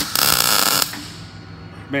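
MIG welder laying a single short tack weld on steel flat bar and sheet: a loud crackling arc lasting just under a second that cuts off sharply.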